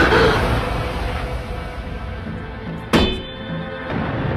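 Tense, dark drama-score music that fades down, then a single sharp metallic clang about three seconds in that rings on briefly.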